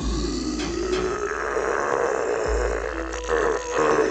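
A deep, guttural creature growl, rough and wavering, over a low rumble: a horror-film monster sound effect.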